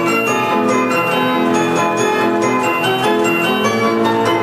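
Imhof & Mukle Badenia II orchestrion playing a tune mechanically from its music roll: sustained organ-pipe chords with struck bells ringing over them.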